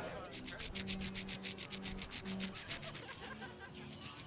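Rapid, even mechanical clicking, about ten clicks a second, over a low held tone that stops and starts a few times.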